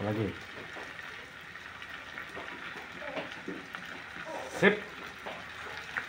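Garlic sizzling steadily in coconut oil and margarine in a frying pan, with tomato sauce just added from a pouch.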